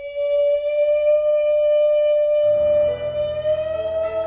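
A woman's singing voice holds one long, high, steady note, lifting slightly in pitch near the end. Piano chords come in beneath it about two and a half seconds in.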